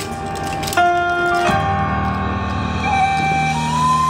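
Yosakoi dance music played over outdoor PA speakers: held melodic notes over a sustained chord that comes in about a second and a half in, with a note sliding upward near the end.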